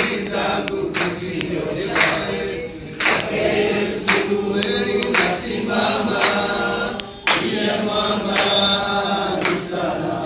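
A crowd of men and women singing a hymn together in many voices, the singing running on in phrases.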